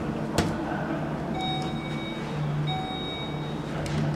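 Elevator's electronic chime sounding twice, two steady beeping tones a little over a second apart, the two-ding signal that the car is going up. A single sharp click comes just before, as a car button is pressed.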